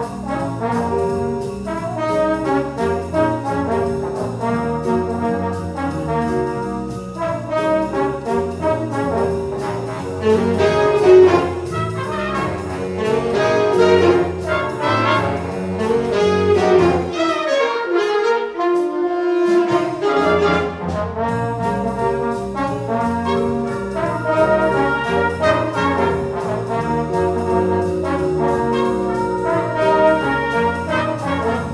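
High school jazz band playing an upbeat swing tune, saxophones and brass over electric bass, guitar and drums. About 18 seconds in, the low end drops out for about two seconds, leaving the horns on their own, then the full band comes back in.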